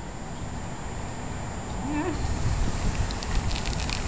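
Low, uneven rumbling noise that grows louder about halfway through, with a faint short voice about two seconds in.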